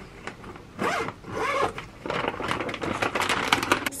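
Zip on the clear plastic cover of a mini greenhouse being pulled open by hand, in several drags: two short ones about a second in, then a longer, nearly continuous run through the second half.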